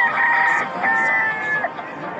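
A rooster crowing once, loud and drawn out in two parts, the second part held on a level note.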